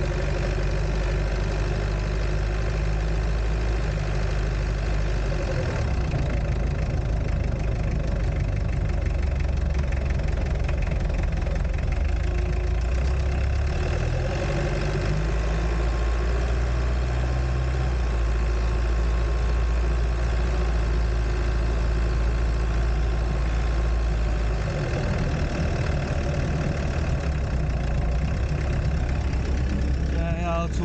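Mitsubishi Delica van's engine running while driving, heard from inside the stripped cabin with the engine cover off, so the engine is loud and close. Its low drone changes pitch a few times, at about six seconds, in the middle and near the end, as the van's speed changes.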